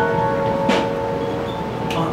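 Live bossa nova band in a soft pause of the intro: a held piano chord ringing out and slowly fading, with a few light drum-kit strokes about two-thirds of a second in and again near the end.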